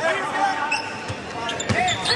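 A basketball being dribbled on a hardwood court, a few bounces in the second second, over arena background noise, with a voice at the start and end.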